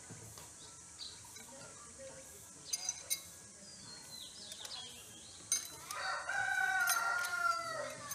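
A rooster crows once in the second half: a single long call of about two seconds that drops in pitch at its end. Earlier there are a few short sharp clicks.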